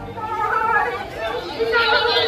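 People's voices chattering in a street, several overlapping and indistinct.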